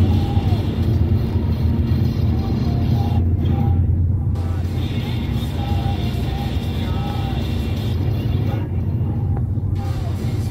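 A song playing on the car stereo, heard inside the cabin over a steady low rumble of road and engine noise.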